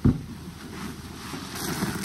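Bath sponges squeezed and sloshed by gloved hands in a basin of foamy soapy water: a splash right at the start as the hands plunge in, then continuous squelching and sloshing, with a brighter fizzing of suds near the end.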